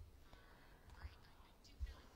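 Near silence, with a faint, indistinct voice in the background and a soft low thump near the end.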